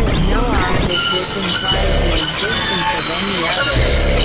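Experimental electronic synthesizer noise music: layered steady high tones that fill in about a second in, over wavering, sliding pitches, with short low rumbles near the middle and again near the end.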